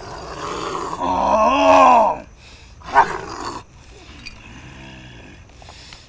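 A man's loud, drawn-out groaning roar that swells and bends in pitch over the first two seconds, a sharp cry about three seconds in, then lower, quieter moans. He is being held by others in an apparent possession-like trance.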